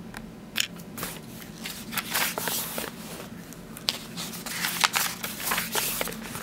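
Paper pages of a book being handled and turned, with irregular crinkly rustles and crackles.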